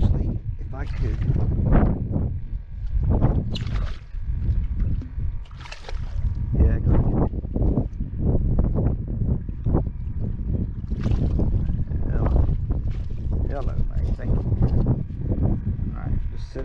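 Wind buffeting the microphone, with indistinct voices and water splashing as a hooked shark thrashes at the surface beside the boat.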